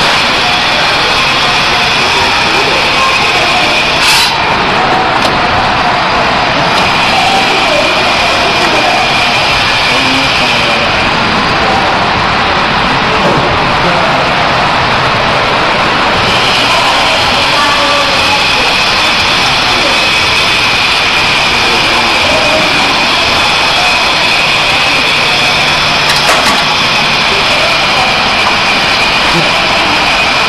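A multifunctional dumpling and samosa forming machine running steadily: a loud, continuous mechanical whir with a steady high whine and a low hum, and a couple of sharp clicks.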